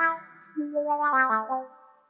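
Electronic arranger keyboard playing a short phrase in a brass-like voice: a held note fading away, then a few held notes stepping downward in pitch.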